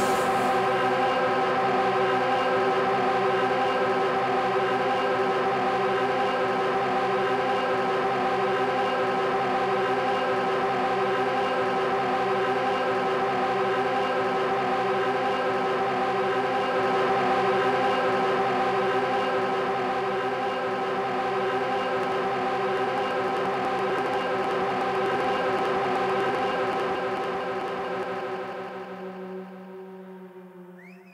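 A live band holding a sustained, droning chord: many steady tones layered together with no beat. It fades out over the last few seconds.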